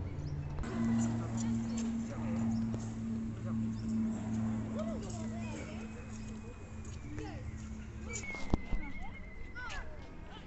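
Birds chirping and whistling in the trees over a low, steady hum that pulses about twice a second. A single sharp knock comes about eight and a half seconds in.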